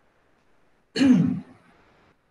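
A man clears his throat once, briefly, about a second in; the rest is near silence.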